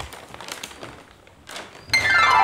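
A few scattered light knocks and rustles of people moving about and handling things, with a louder knock about one and a half seconds in.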